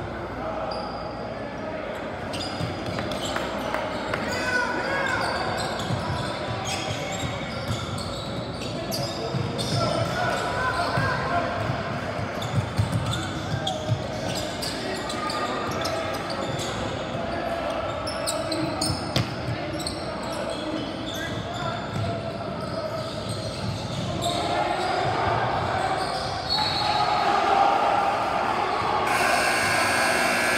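Basketball bouncing on a gym's hardwood floor during play, with occasional short sneaker squeaks. Players and spectators talk and call out throughout, echoing in the large hall, and the voices grow louder near the end.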